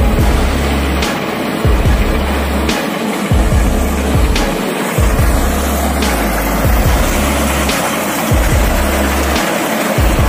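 Background music with deep bass notes that change in steady blocks and an even beat.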